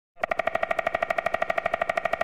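Woodpecker sound synthesized in Xfer Serum: a fast, even train of pecking clicks, well over ten a second, with a steady pitched ring. It imitates a woodpecker drumming on a tree, and the pecking sits toward the right of the stereo image.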